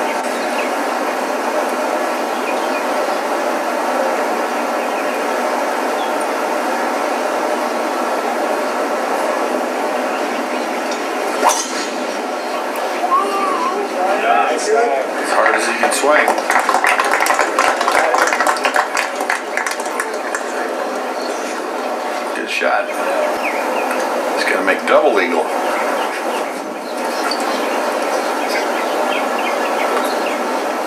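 Golf tournament gallery at a tee. A steady outdoor crowd hum runs underneath. Partway through comes one sharp crack of a driver striking a tee shot, followed by several seconds of shouts and applause. A shorter burst of crowd noise comes later.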